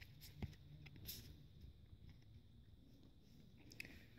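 Near silence, with a few faint clicks and rustles of trading cards being handled, the clearest about half a second in.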